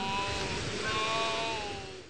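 Wind sound effect: a steady hiss of blowing wind with a faint whistling tone that falls slightly, fading toward the end.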